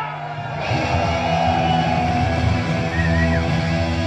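Heavy metal band starting to play live: loud distorted electric guitar and the rest of the band come in about half a second in and carry on.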